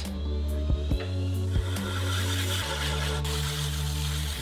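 Background music with sustained low notes that change pitch about two-thirds of the way through, over the gritty scraping of a glazed mug's bottom being ground on a wet diamond grinding pad turning on a pottery wheel, starting about a second in.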